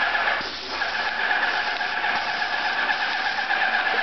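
Paint spray gun spraying in one long steady hiss, with a short break about half a second in.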